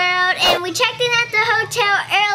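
A young girl's high voice talking in a lively, sing-song way.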